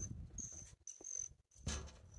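Faint insect trilling outdoors: a thin, high, steady tone that comes and goes in short stretches. A brief soft rustle near the end.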